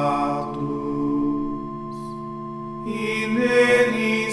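A sung liturgical antiphon in plainchant style. The voice holds a long note that fades in the middle, then a new sung phrase starts about three seconds in.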